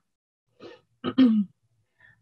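A person clearing their throat once, about a second in: a short rasp followed by a brief voiced 'ahem' that drops slightly in pitch.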